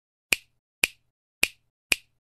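Four sharp finger-snap clicks, about half a second apart: an intro sound effect timed to the letters of an animated title appearing.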